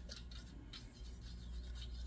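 Faint scraping of a thin steel feeler gauge blade sliding under the flange of a timing chain cover lying on a metal table, checking the warped flange for gaps. A low, steady hum runs underneath.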